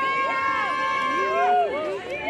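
Several people outdoors shouting overlapping calls, typical of photographers and fans calling to a passing celebrity: one high voice holds a long call for about a second and a half while other voices call out with rising and falling pitch.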